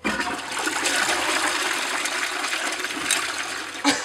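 Toilet flushing: a rush of water that starts suddenly and runs steadily, with a short knock near the end.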